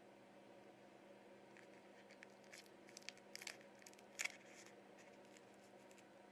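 Faint crinkling and small clicks of a plastic protector being peeled off a Samsung phone battery, loudest about four seconds in, over a faint steady hum.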